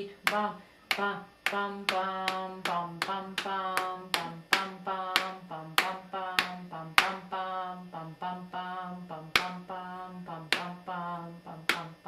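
A woman's voice sings a syncopated short-long-short rhythm on wordless 'bum' syllables, holding close to one low pitch. Sharp taps mark a steady beat underneath, made with her fingers against the whiteboard.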